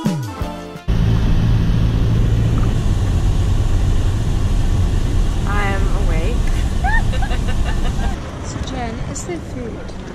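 Steady low road rumble inside a moving minibus, with women's voices in the cabin from about halfway through. It opens with a short falling tone as a music track ends, and the rumble eases off near the end.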